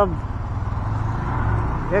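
Motorcycle engine running steadily at low road speed, a low rumble with a faint steady whine above it.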